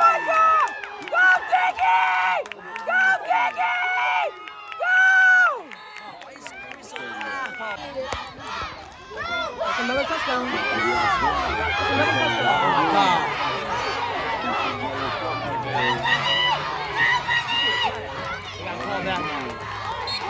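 Football spectators shouting and cheering: loud, high-pitched excited yells in the first six seconds, then a crowd of overlapping voices and cheers building up from about eight seconds in.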